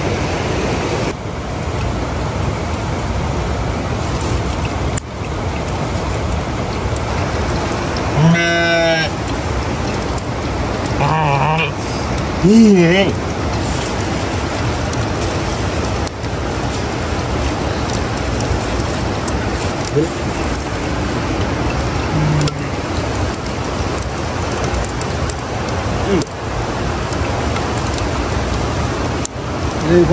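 Steady rushing outdoor noise throughout, with a few short pitched voice-like calls about eight and twelve seconds in.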